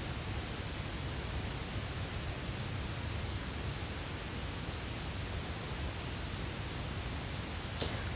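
Steady, even hiss with a low rumble underneath and nothing else happening: the room tone and microphone noise of a quiet room.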